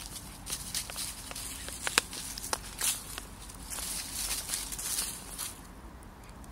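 Dry fallen leaves rustling and crackling under the paws of two dogs scuffling and wrestling in play, with a few sharp crackles and a busier patch near the end before it dies down.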